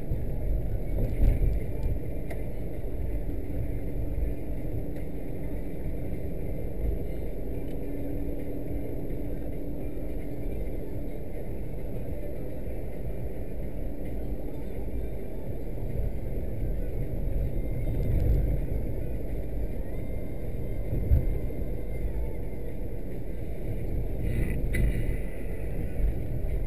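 Car-interior driving noise picked up by a windscreen dashcam: a steady low rumble of engine and tyres on asphalt, with a few brief bumps along the way.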